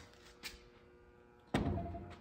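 A heavy five-gallon stoneware jug set down on a wooden table: one sudden thud about one and a half seconds in, after a quiet stretch with a faint tick.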